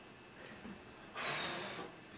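A single breathy puff of air about a second in, lasting under a second: a person blowing at trick relighting birthday candles that keep coming back alight.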